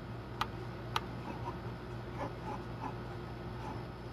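Pencil drawing on paper, with two sharp clicks about half a second apart near the start and a few faint strokes after, over a steady low hum.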